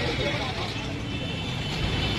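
Busy street ambience: a steady rumble of road traffic with background voices.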